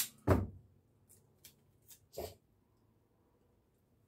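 Two short breathy vocal noises from a man, the louder about a third of a second in and a second just after two seconds, with a few faint ticks of wire handling between them; then near silence.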